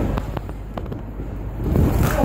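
Boxing exchange in the ring: about half a dozen sharp knocks and slaps of gloves landing and feet shuffling on the canvas, over a steady low hum of the hall.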